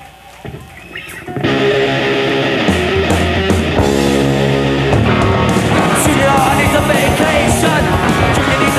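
Punk rock band playing live with electric guitar, bass and drums. After a quieter opening, the full band comes in together about a second and a half in, and the song carries on loud and dense.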